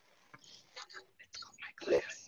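Faint, indistinct whispering in short broken fragments, with one louder brief burst near the end.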